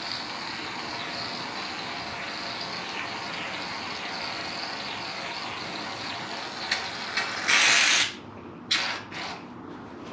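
Aerosol can of foam shaving cream spraying in a long steady hiss, then several short spurts near the end, the loudest lasting about half a second.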